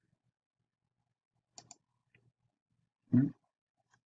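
Near silence broken by two quick computer mouse clicks about a second and a half in, followed by a few fainter ticks.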